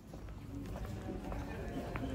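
Street ambience while walking along a paved pedestrian shopping street: footsteps on the paving stones, faint voices of passers-by, and a low rumble on the microphone.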